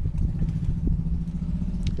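A steady low mechanical hum with a rumble underneath, like a motor or engine running, with a few faint clicks.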